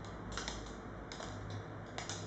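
Light, irregular clicks and taps as the thin rods of a hanging kinetic sculpture knock against one another, a few times over the two seconds, over a steady low hum.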